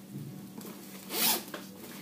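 The zip of a women's quilted jacket pulled once, quickly, about a second in.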